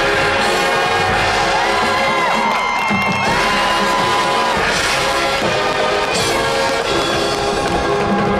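High school marching band playing long-held chords on brass and winds with percussion, with some cheering from the crowd.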